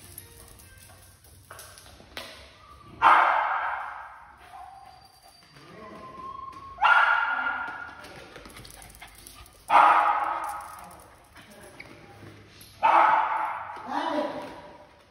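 A dog barking four times, one bark about every three seconds. Each bark starts sharply and trails off over about a second.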